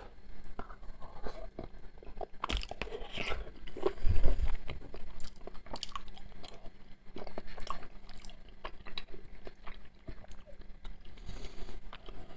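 A person chewing a mouthful of soft lasagna open-mouthed close to the microphone, with many wet smacks and clicks. A louder low thud comes about four seconds in.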